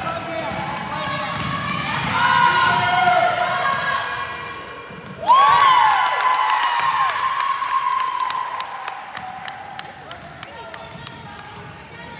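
Basketball sneakers squeaking on a hardwood gym floor as players run the court, the sharpest squeak about five seconds in. From about halfway through, a basketball is dribbled in quick, even bounces, with players' voices calling in the echoing gym.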